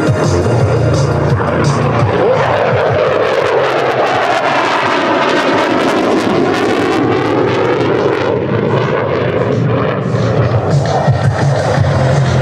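Saab JAS 39C Gripen's single jet engine (Volvo RM12) rushing past in a display pass, with a sweeping, phasing whoosh as it goes over. Loudspeaker music with a steady beat plays at the start, sinks under the jet noise in the middle and returns near the end.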